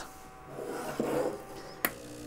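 Breville Barista Touch steam wand being handled and pushed down: a faint rubbing, then a sharp click near the end as the wand is lowered. Right after the click, the machine starts a steady low hum as its automatic steam-wand purge begins.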